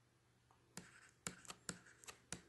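A pen writing by hand, faint: a few short scratchy strokes begin about three-quarters of a second in, as letters are written.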